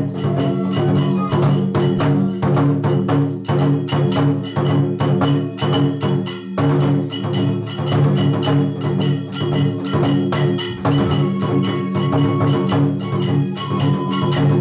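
Kagura hayashi music: fast, steady drum strokes with hand cymbals over held tones, breaking off briefly about halfway and picking up again.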